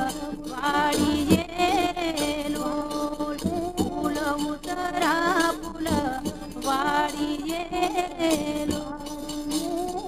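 Gujarati folk song: a woman singing over a steady held drone, with percussion strokes falling in pairs every couple of seconds.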